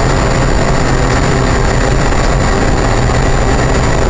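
Boeing 777 flight simulator's cabin sound: steady loud rushing engine and airflow noise with a low hum underneath and a thin high whine over it.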